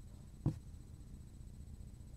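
A single knock on a cutting board about half a second in, short and low-pitched.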